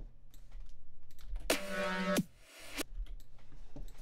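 Computer mouse clicks and keyboard taps, with a short pitched electronic sample played back for under a second about one and a half seconds in. It bends down in pitch at its end and is followed by a brief hiss.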